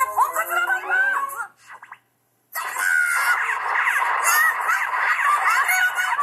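A cartoon character's voice for the first second and a half, then a half-second of dead silence. After that comes a cartoon fight-cloud sound effect: a dense, steady jumble of many overlapping high voices rising and falling, played back from a computer.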